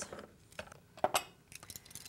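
A few light clicks and clinks from a metal measuring spoon and a salt container as a teaspoon of salt is measured out, the sharpest about a second in.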